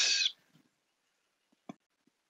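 A brief hissy sound right at the start, then near silence broken by a single faint mouse click.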